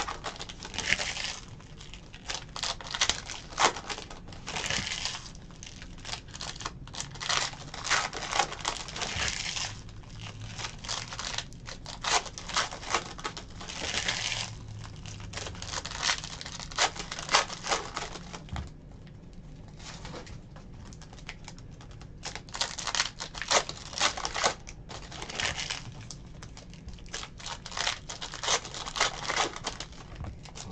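Foil trading-card pack wrappers crinkling and tearing as packs are ripped open by hand, in dense irregular crackles, easing off for a few seconds about two-thirds of the way through.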